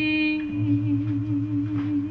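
A woman's voice humming one long held note with a slight waver, over low notes on an acoustic guitar.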